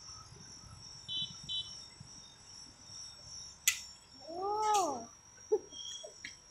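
A cat meowing once, a single call that rises and falls in pitch, about four seconds in. It comes with a few sharp metallic clinks as the metal spatulas and cups are handled on the steel ice-cream plate.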